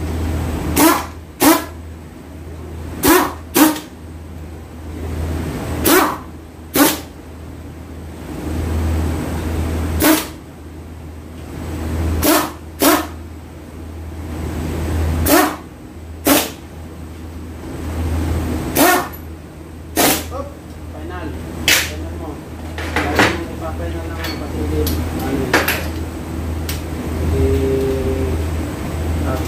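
Pneumatic impact wrench firing in short bursts, about seventeen of them spaced a second or two apart, as it takes bolts off a transfer case. A steady low hum runs underneath.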